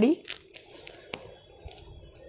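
Faint rustle of a tussar silk sari being unfolded and spread out by hand, with a single sharp click about a second in.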